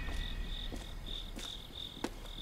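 Crickets chirping in short, evenly repeated pulses, about three a second, with a few faint footsteps on pavement.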